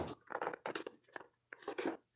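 Hands turning and handling a rigid cardboard box, with short scrapes, taps and rubbing in several separate bursts and a brief pause about halfway through.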